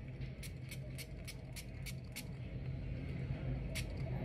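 A person sniffing in a quick run of short sniffs, about three or four a second, smelling a perfume just tried on, with one more sniff near the end. A steady low hum lies underneath.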